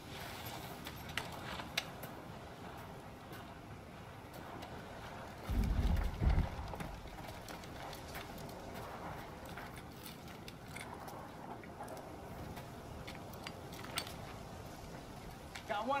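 Quiet outdoor ambience of scattered light clicks and rustles, with a brief low rumble about six seconds in.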